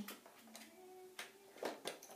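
A few light taps on hard plastic, three short clicks in the second half, over faint steady background tones: a baby's hands on a plastic activity toy.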